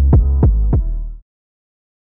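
A quick run of deep, booming sound-effect hits, about three a second over a low rumble, each sweeping down in pitch. The run cuts off abruptly a little over a second in.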